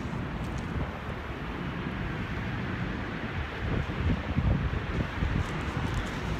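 Wind rumbling on a handheld phone's microphone over a steady wash of street traffic, with stronger gusts about four seconds in.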